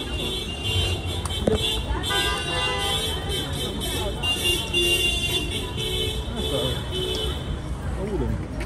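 City street traffic: a steady low rumble of vehicles, with a sustained high tone lasting a few seconds in the middle, like a horn, and faint voices near the end.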